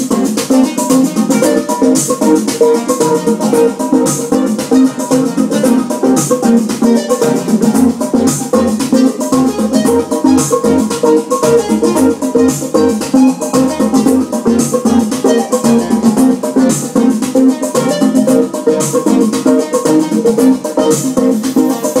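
Live electronic music from vintage Roland drum machines and analog synthesizers: a fast, steady ticking percussion pattern over sustained synth tones.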